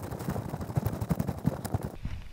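A rapid, irregular crackle of small knocks and rumbles: handling and wind noise on a body-worn camera while its wearer walks over beach sand in waders.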